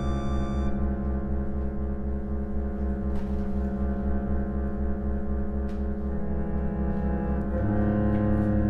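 1950s Yamaha reed organs (pump organs) holding a long sustained chord over a low droning bass note that pulses steadily. The high notes drop out just under a second in, and the harmony shifts twice in the last two seconds.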